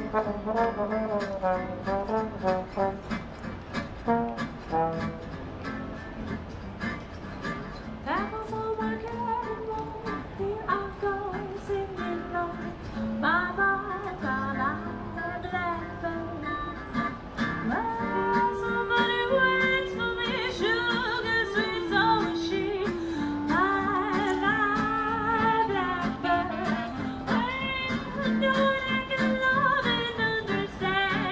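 Small street band playing a jazzy song on trombone, clarinet and acoustic guitar; the trombone leads at first, then a woman's singing voice takes the melody about eight seconds in and carries on to the end.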